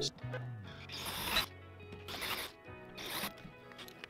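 Three short rasping bursts of a tool working the metal brake-caliper mount clamped in a bench vise, about a second apart, over background music.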